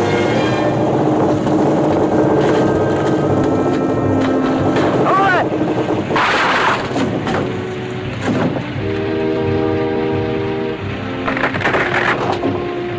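Background film-score music with held notes, under other soundtrack noises, including a short noisy burst about six seconds in.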